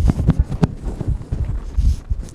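Footsteps thudding on a hollow stage platform, a quick, irregular run of thumps.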